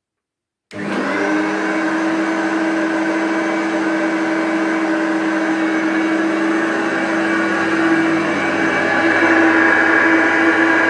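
Hoover Turbopower upright vacuum cleaner starting suddenly under a second in, then running steadily with a strong hum and a higher whine, a little louder near the end. It is running with a makeshift bag sewn from a jeans leg that chokes the airflow and builds up pressure in the bag compartment.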